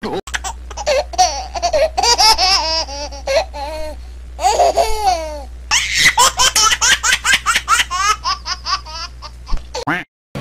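A man laughing hard into a handheld microphone in rapid, repeated bursts that rise and fall in pitch, over a steady low hum. It starts and stops abruptly.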